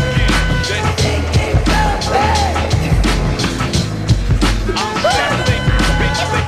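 Music with a steady drum beat and bass line, with skateboard wheels rolling on concrete beneath it.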